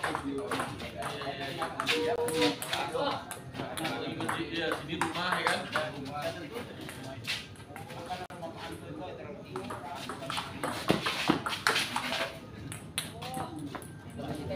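Table tennis rally: a celluloid ball clicking sharply off rubber paddles and the table top, heard under people talking throughout.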